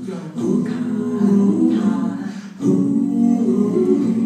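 An a cappella vocal group singing sustained harmony chords into microphones, in two long held phrases with a brief break between them about two and a half seconds in.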